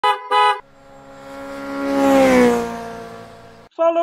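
Two quick horn beeps, then a vehicle passes by: its steady pitched tone swells, drops in pitch as it goes past about two seconds in, and fades away. A voice begins right at the end.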